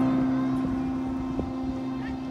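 A marching band's single low held note, left sounding after a loud full-band chord, fading slowly. A faint knock comes about one and a half seconds in.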